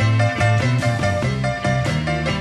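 Live electric blues band playing an instrumental passage between sung verses, with a steady beat.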